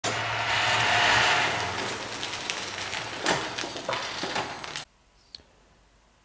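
John Deere 140 garden tractor converted to a 48-volt electric transaxle, driving under its own electric power: a steady hiss of tyres and drivetrain over a low hum, loudest about a second in, with a few light clicks. It cuts off abruptly to near silence near the end.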